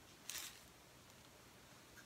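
Near silence in a small room, broken once, about a third of a second in, by a brief soft scuff, as of something light handled on the plastic-covered worktable.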